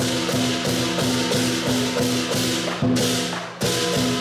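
Southern lion dance percussion: drum, cymbals and gong playing a fast, steady beat, with cymbal clashes about three times a second over a ringing tone. Two heavier accented strikes come near the end.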